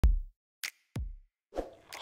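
Short electronic intro sting of separate drum-machine hits: a deep thump at the start, a short high tick, a second deep thump just under a second in, then a softer pop near the end, with silence between the hits.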